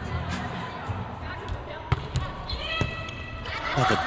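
A volleyball bounced on the indoor court and then served, with a sharp slap about two seconds in, over steady arena crowd noise.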